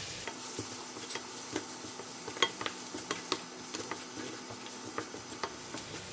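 Chopped onions and spice powders frying in oil in a stainless steel wok, sizzling steadily, with irregular clicks and scrapes as a wooden spatula stirs against the pan. The masala is being fried until it gives off its fragrance.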